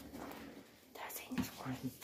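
Quiet voices speaking low, close to a whisper.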